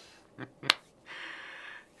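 A faint click, then a sharp click a moment later, followed by a soft rustling hiss for most of a second: a man's hands snapping or clapping, then rubbing together.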